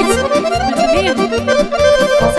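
Roland digital accordion playing a fast, ornamented melody in lăutari-style party music, over a steady quick bass beat from the band.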